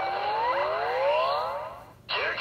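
DX Yo-kai Watch Type Zero toy playing an electronic sound effect through its speaker: several tones climb together in a rising sweep that fades out near the end.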